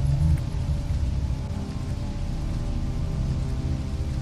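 Dark ambient background music, a low drone with several held tones, over a steady rain sound.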